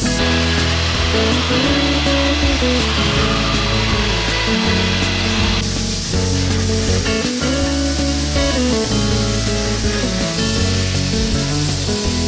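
Background music throughout. For the first half, the hiss of a COMBY3500 steam cleaner's wand spraying steam runs under the music, then cuts off suddenly about five and a half seconds in.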